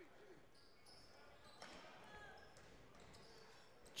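Faint sound of a basketball game in play in a gym: a ball bouncing on the court and brief sneaker squeaks, heard low.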